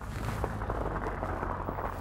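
Studded fat-bike tyres rolling over hard-packed snow and ice, a steady low rumble and hiss with a few faint ticks.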